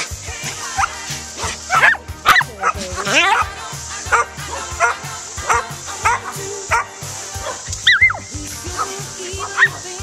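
Dogs barking and yipping in play as they run together, in short high yelps that come in a cluster a couple of seconds in and again near the end, over a song playing throughout.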